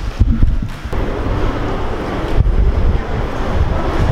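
Loud low rumbling of wind and handling noise on a handheld camera's microphone as it is carried along at a walk.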